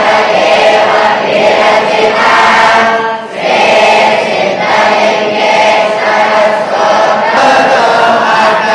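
A large group of young voices chanting in unison, in long sustained phrases, with a brief pause for breath about three seconds in.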